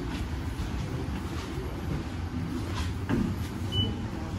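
Steady low rumble inside a Mitsubishi elevator, with a short high electronic beep near the end.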